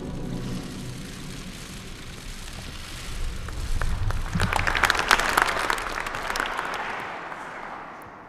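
Audience applauding, swelling about three to four seconds in and dying away near the end.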